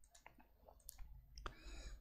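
Near silence with a few faint, scattered computer-mouse clicks.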